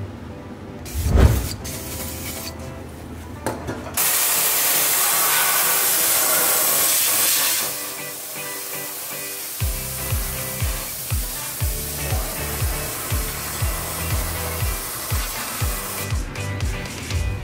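Background music, cut across by a loud, steady spray hiss lasting about three and a half seconds, such as an aerosol or air jet aimed at the bare thermostat seat. After it the music carries on with a steady beat of about two pulses a second.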